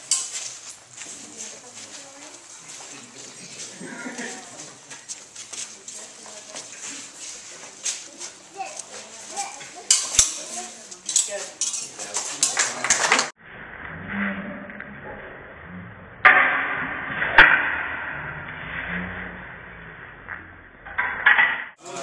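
Steel rapier blades clicking and clinking against each other in quick, irregular contacts during a fencing bout, thickest just past halfway. The sound then cuts off abruptly into a duller, noisier stretch.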